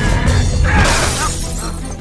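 Film fight-scene soundtrack: a score with heavy, steady bass. About a second in, a loud shattering crash comes in and rings on to the end.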